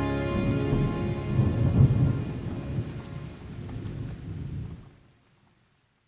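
Rain and rolling thunder sound effect closing a pop song's recording, as the last held piano and string notes die away in the first half second. The rumble is loudest about two seconds in, then fades to silence about five seconds in.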